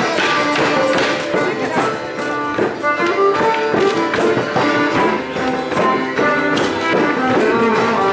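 A live folk band plays a lively Border morris dance tune, with a melody line over steady sharp percussive beats.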